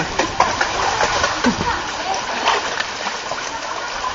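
Water splashing in a shallow stone pool as a man wades through it and stirs it with his hand, over a steady rush of moving water.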